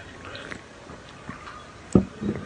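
Quiet swallowing while drinking from an aluminium can, then the can set down on a table top with a single sharp knock near the end.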